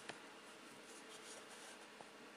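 Near silence, with faint rubbing and scratching from fingers handling braided line against the fly at the vise.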